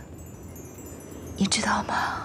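A woman whispering a short phrase about one and a half seconds in, breathy and close, after a quiet start.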